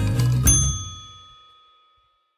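Short closing music sting that ends on a single bell-like ding about half a second in, which rings out and fades away to silence.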